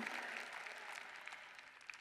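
Audience applause, a dense patter of clapping that dies away toward the end.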